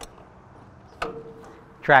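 Old tractor's gear shifter being worked: one sharp click about a second in, followed by a short faint ringing tone.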